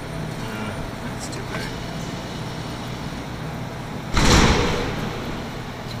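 Steady arcade background din, with one sudden loud, noisy burst about four seconds in that fades away over about a second.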